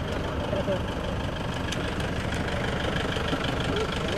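A pickup truck's engine idling steadily, with several people talking over it.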